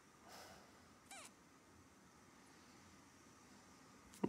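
Near silence: room tone, with a faint short puff of noise just after the start and a brief faint squeak falling in pitch about a second in.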